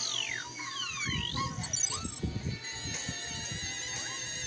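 Soundtrack of a children's TV channel promo played through a device speaker: music with cartoon whistle effects gliding down and up in pitch in the first two seconds, over low beats, then a sustained electronic chord.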